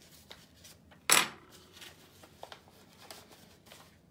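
Paper rustling as a greeting card is handled and opened, with one short, sharp crackle about a second in, then small clicks and soft rustles.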